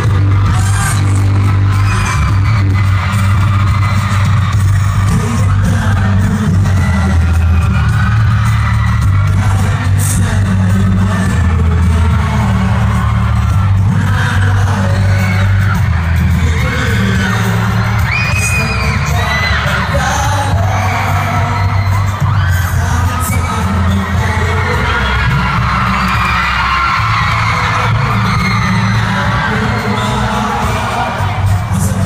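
Live pop music played loud through a PA with a heavy bass, with a male vocal group singing over it and the audience audible beneath.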